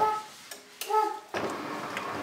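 A young child's high-pitched voice in two short sung or spoken sounds, followed from a little past halfway by a steady, even noise.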